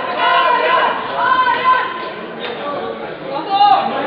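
Voices of people in a large bowling hall talking and calling out, with one louder shout about three and a half seconds in.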